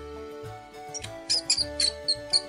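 A mouse squeaking: a quick run of short, high-pitched squeaks starting about a second in, over light background music.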